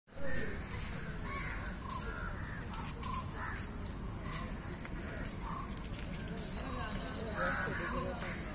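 Crows cawing repeatedly, short calls coming every second or so, over a steady low background rumble.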